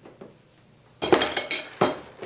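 Hard objects clattering and clinking: three sharp clatters in the second half, after a quiet start.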